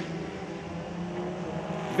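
Several stock-car racing engines running in a pack through a turn, a steady drone with little change in pitch.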